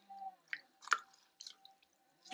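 Wet clay and a water-soaked sponge squelching under the hands on a spinning potter's wheel: a few short, faint wet clicks and drips, the loudest about a second in.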